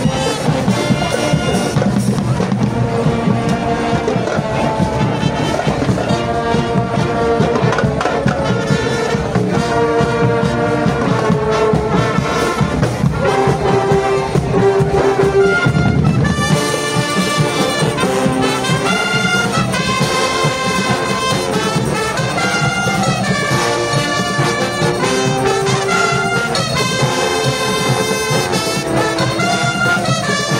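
Marching band's brass section playing a tune, trumpets and trombones over tubas with drums. About halfway through the heavy low drumming thins out and the brass lines stand out more clearly.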